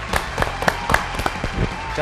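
A few people clapping in a steady rhythm, about four sharp claps a second, over a low background music bed.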